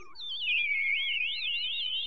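Warbling electronic tones, several at once and high-pitched, with a fast vibrato. They glide down in the first half second, then waver steadily, as part of a sci-fi-style outro sound effect.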